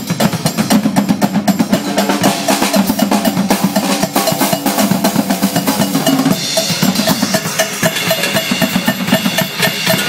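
A drum kit and congas played together live in a fast, dense rhythm of snare, bass drum and hand-drum strokes. In the second half a higher drum tone repeats evenly over the groove.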